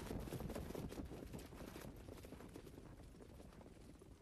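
Hoofbeats of a Standardbred trotter pulling a sulky past, a rapid patter of clicks that fades as the horse moves away.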